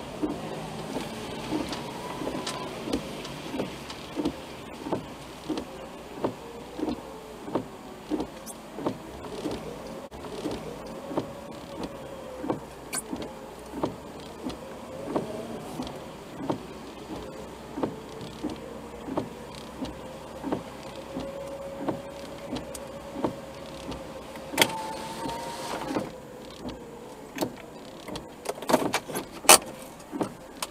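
Inside a car moving slowly: a steady hum whose pitch drifts slowly up and down, with short even ticks about one and a half times a second. Near the end there is a quick run of sharper clicks.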